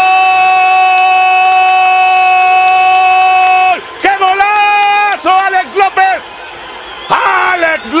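Spanish-language football commentator's goal cry, one long "gol" held at a steady pitch that breaks off about three and a half seconds in, followed by excited shouted commentary.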